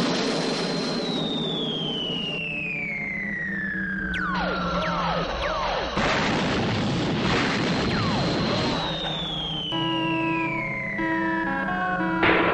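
Electronic science-fiction soundtrack: a held high whistle that glides steadily down in pitch over a rushing noise, twice, with shorter falling whistles and held low notes between.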